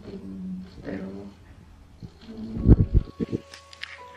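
A woman's voice briefly, then a cluster of loud, deep thumps and rumbles from a handheld phone camera being handled, with a few sharp clicks near the end.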